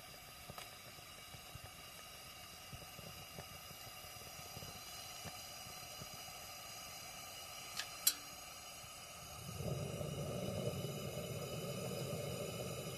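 A camping lantern burning with a faint steady hiss. Two sharp clicks come about eight seconds in, and a louder, deeper rushing noise sets in about two seconds before the end.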